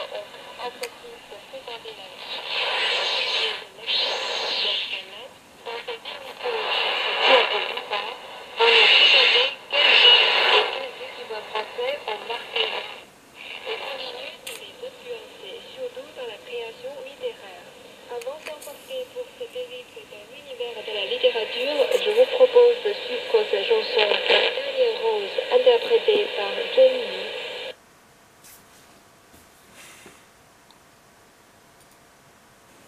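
French-language shortwave broadcast speech heard through the loudspeaker of a home-built shortwave receiver, tuned with its sharp (about 5 kHz) IF filter switched in. The sound is narrow and tinny, with a steady hiss behind the voice. It cuts off suddenly near the end.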